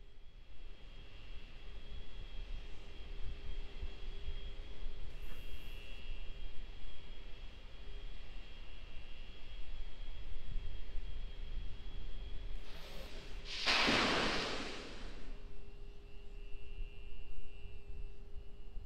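Pad audio of the Starship SN15 prototype venting propellant before launch: a low steady rumble with a faint steady whine. About fourteen seconds in, a louder rushing hiss swells and fades over about a second and a half.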